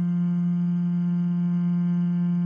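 A held note of a monotone vocal-tone sample played through Ableton's Sampler in sustain mode, looping between its loop start and end points as the key stays down. It is one steady, unchanging pitched tone with a stack of overtones.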